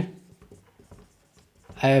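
Marker pen writing on a whiteboard: faint scratches and small taps of the felt tip as words are written, with a man's voice starting near the end.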